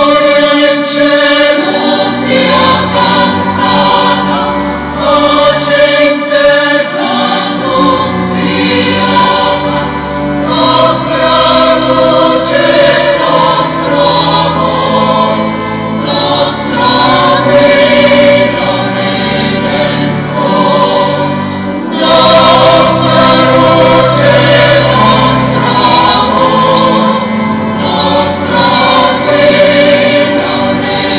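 Church choir singing in sustained phrases, with a fuller, louder phrase beginning about two-thirds of the way through.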